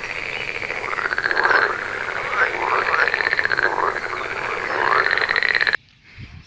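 Frogs croaking: a run of rattling, trilled calls about two a second. It cuts off suddenly near the end.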